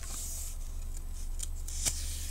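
Paper rustling as an open book's page is handled, with a short click just before the end.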